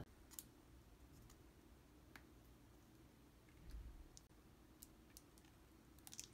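Near silence broken by a few faint plastic clicks as a 27-gauge needle in its clear plastic sheath is twisted onto a Luer lock syringe.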